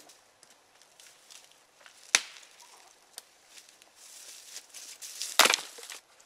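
Dry deadwood snapping twice, a sharp crack about two seconds in and a louder one near the end, with the rustle and crunch of dry leaf litter in between as firewood is gathered.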